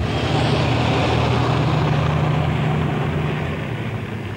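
Fire truck's engine running as it drives past on a wet road, over a steady hiss; the sound eases off near the end as the truck pulls away.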